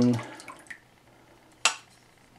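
Quiet kitchen with a faint click about a third of the way in and one short, sharp knock of kitchenware near the end, as things are handled over a ceramic bowl of flour.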